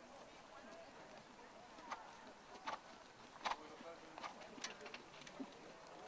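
Quiet outdoor ambience with faint distant voices, and a handful of sharp, irregularly spaced clicks from about two seconds in, the loudest near the middle.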